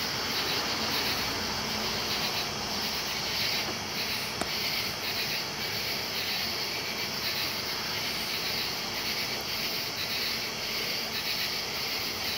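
Steady high hiss, with one faint click about four seconds in.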